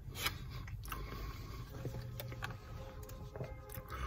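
Faint chewing and mouth sounds of a man eating a hot dog, with a few soft clicks, over a low steady hum inside a car.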